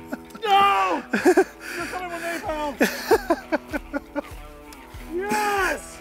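A man's excited, wordless vocal exclamations in several bursts over background music.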